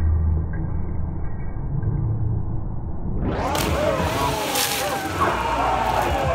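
A low rumble for about three seconds, then voices and a short splash about four and a half seconds in as a dog lands in a dock-diving pool.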